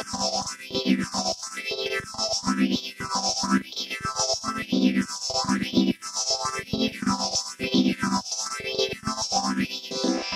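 Korg minilogue synthesizer playing a repeating sequence through an extreme phaser setting on a Line 6 HX Stomp, its sweep rising and falling about once a second.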